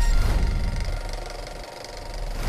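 Electronic intro sting under the channel logos: a dense, noisy sound-design texture over a deep bass rumble, loud at first and fading toward the end.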